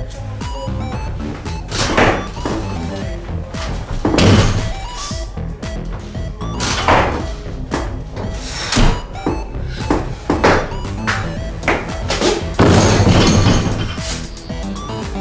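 Background music over a barbell clean and jerk. There are several loud thuds and clanks of the bar and bumper plates, the heaviest about four seconds in and near the end as the bar goes back to the platform.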